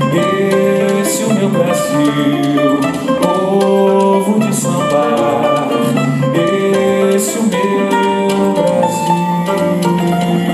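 Ten-string bandolim playing a plucked melodic instrumental passage, with bass and light percussion underneath.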